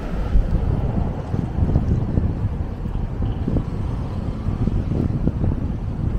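Wind buffeting the camera's microphone: an uneven, gusting low rumble.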